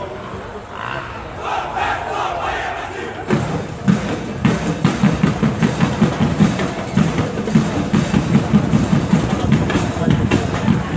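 Cheering and shouts, then about three seconds in a marching band's drum section starts a steady beat with deep bass-drum strokes that carries on.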